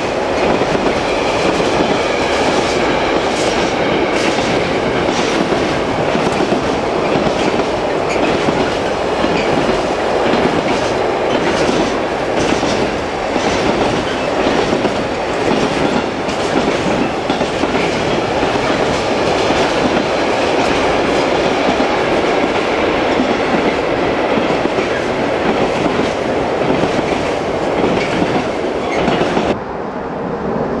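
A long container freight train running past close by: a steady loud rumble of the wagons with irregular clatter of the wheels over the rail joints. The sound cuts off suddenly near the end.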